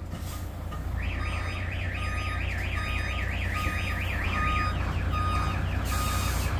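Truck's reverse alarm warbling, a tone sweeping up and down about four to five times a second, starting about a second in and fading over the last second, over the low running of the truck's diesel engine as it backs up.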